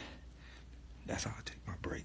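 A man's short, breathy exhalations, two of them about a second in and near the end, from the exertion of doing push-ups.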